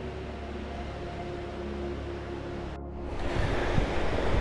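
Soft ambient music of long held tones over a low drone. About three seconds in it breaks off and gives way to the outdoor noise of wind on the microphone and surf, which grows louder near the end.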